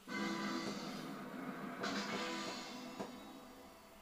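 A short music sting from a television quiz show. It starts suddenly, swells again about two seconds in, then fades.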